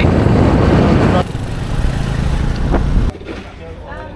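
Wind buffeting the microphone over a motor scooter's engine while riding. It steps down in level about a second in, then cuts off about three seconds in to much quieter outdoor background.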